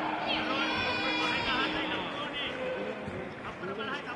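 Arena crowd noise with several voices shouting and calling over one another, including one higher, drawn-out call in the first half.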